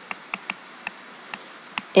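Stylus tapping and scratching on a tablet screen during handwriting: a handful of short, irregular ticks over a faint steady hiss.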